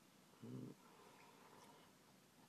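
Near silence, broken once about half a second in by a short, low hum from a man's voice.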